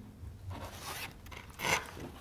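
Sheets of paper rustling faintly as they are handled, with one short, louder rustle near the end.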